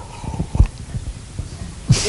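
Drinking from a mug right beside a headset microphone: a run of low gulps and thuds, the loudest about half a second in.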